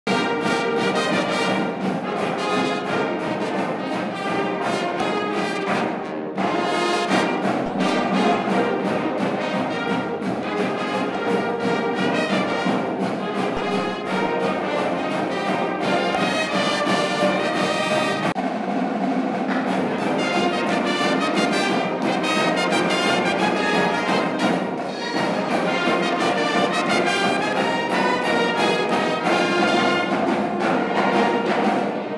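Student marching band playing an upbeat tune on brass and saxophones: trumpets, saxophones and sousaphones together over a steady beat. The low brass drops out for a moment a little past halfway.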